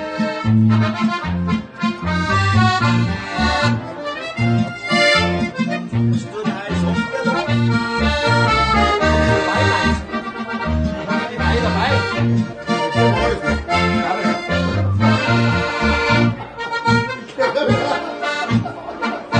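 A piano accordion and a diatonic button accordion (Steirische Harmonika) playing a lively folk tune together, with sustained reedy chords over bass notes on each beat.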